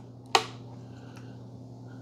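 A single sharp plastic click as the removable upper conical burr of an OXO Brew burr grinder is set back into its housing, then a faint tick about a second in, over a steady low hum.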